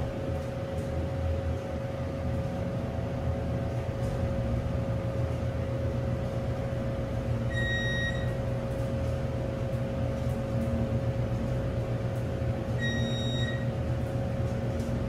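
MEI hydraulic elevator car travelling up, with the steady hum of the hydraulic pump unit and a constant whine. A short electronic beep sounds about eight seconds in as the car passes a floor, and again near the end as it reaches the next floor.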